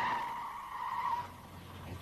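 Renault 18's tyres squealing under hard braking, a steady high-pitched squeal that fades out about a second in.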